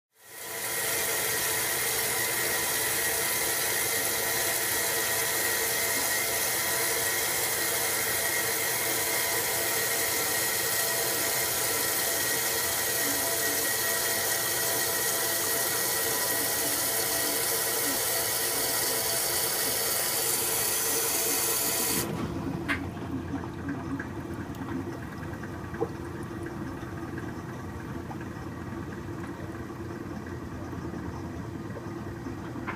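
1966 Philco Flex-A-Wash washing machine filling its tub, with water pouring in as a loud, steady hiss. About two-thirds of the way through the water cuts off suddenly, and a quieter, lower motor sound runs on with two sharp clicks.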